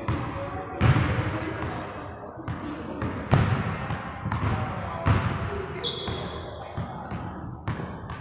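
Basketball bouncing on a hardwood gym floor while being dribbled: several irregularly spaced bounces, echoing in the large hall. A short high sneaker squeak on the floor comes about six seconds in.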